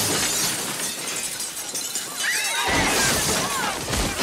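Window glass shattering and debris crashing as a body smashes through a window, in a film's sound effects; the crash dies away after about two and a half seconds. Short, high sliding tones follow near the end.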